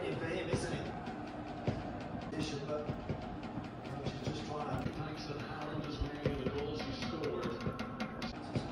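A televised football match playing in the background: a commentator's voice over steady crowd noise, with scattered light clicks and knocks.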